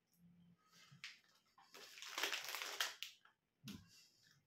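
Crinkly plastic packet of pork scratchings rustling for about a second as a piece is taken out, followed by a short click near the end.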